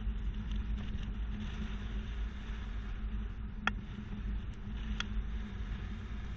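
2020 Mitsubishi Outlander Sport driving slowly through a slalom, heard from behind at the hitch: a steady low engine and tyre rumble. Two short clicks come about three and a half seconds in and again a little over a second later.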